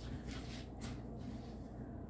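Faint, soft scuffing of a cat's paws on a laminate floor as it dashes off, a few light scuffs in the first second.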